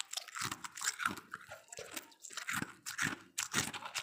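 Freezer frost being chewed close to the microphone: a steady run of crisp ice crunches, about two to three a second.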